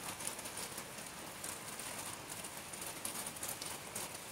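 Light rain falling steadily: an even patter of many small drops on wet ground and leaves.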